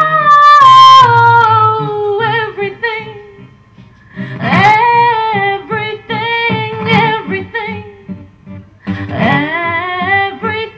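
Female voice singing a wordless melody over fingerpicked acoustic guitar. A long note slides downward over the first few seconds, the music dips briefly about four seconds in, and new vocal phrases rise in just after and again near the end.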